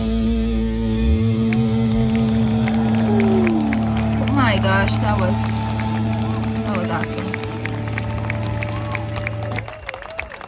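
A live heavy-metal band's final chord, on distorted guitar and bass, rings out while the crowd shouts, cheers and claps. The chord cuts off sharply near the end.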